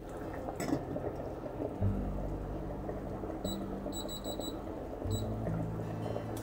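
Background music with a steady bass line over a saucepan of soup simmering on an induction hob, with a light metal clink as the stainless lid goes on early. From about three and a half seconds in, the hob's controls give a run of short, high electronic beeps, then one more near five seconds, as its timer is set.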